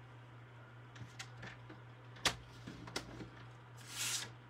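Cardstock being scored and handled on a paper trimmer: a few light clicks and taps, the sharpest about two seconds in.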